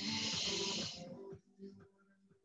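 A forceful exhale hissed out through pursed lips, about a second long, the Pilates breath timed to a leg-scissor rep. Faint background music runs underneath.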